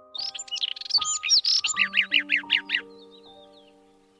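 A robin singing one high phrase of varied whistles and warbles. It ends in a quick run of about eight repeated notes and stops about three seconds in. Under it runs soft background music of slow single notes that ring and fade.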